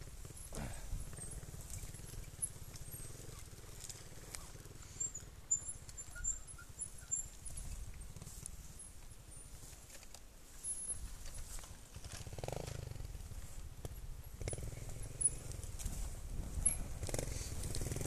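Trial motorcycle engine running at low revs, a steady low chugging, with occasional knocks as the bike crosses rough ground.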